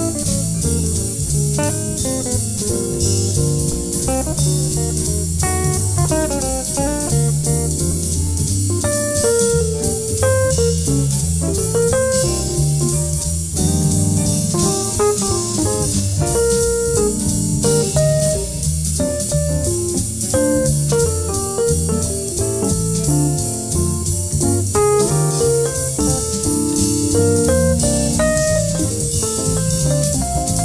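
Jazz guitar improvisation on an Epiphone ES-175 hollow-body archtop electric guitar: flowing single-note lines over keyboard piano chords, with a steady cymbal and drum beat underneath.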